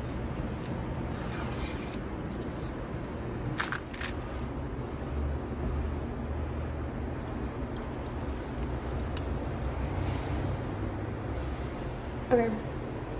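A wooden spatula stirring roasted potato slices on a parchment-lined sheet pan, with a few light clicks and scrapes about 3.5 to 4 seconds in and again near 9 seconds, over a steady low rumble.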